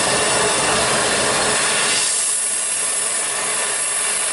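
Gas torch flame rushing and hissing as it burns paint off a steel sculpture. About two seconds in the low rumble drops away, leaving a thinner, higher hiss as the flame narrows.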